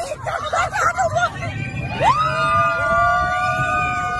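Excited voices, then about halfway in two voices break into long, high-pitched screams held steady to the end.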